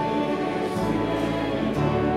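Live church music from a small ensemble with piano and singing voices, slow held chords that change near the end.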